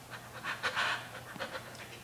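A baby panting in short, excited breathy huffs, strongest from about half a second to a second in, with a couple more near the middle.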